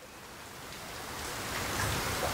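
A steady hiss of background noise with no distinct events, growing gradually louder.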